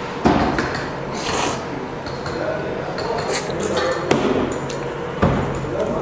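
Hand-pulled beef noodles being slurped, in a few short hissy slurps, while chopsticks click against the ceramic noodle bowl about three times.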